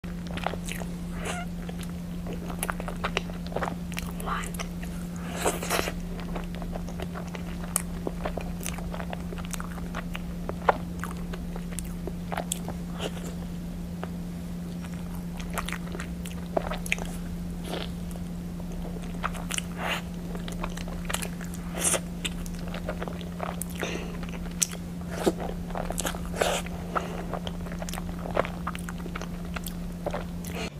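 Close-up eating sounds: bites into and chewing of soft taro and matcha-chocolate pastries, with irregular small crackles and mouth clicks. A steady low hum runs underneath.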